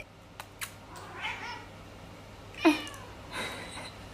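Domestic cat meowing: a faint meow a little over a second in, then a louder, short meow that falls in pitch a bit past halfway, and a faint one after it.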